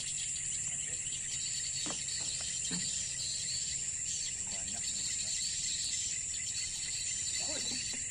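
Steady high-pitched chorus of insects in the surrounding grass, over a low steady rumble, with two faint knocks about two and three seconds in.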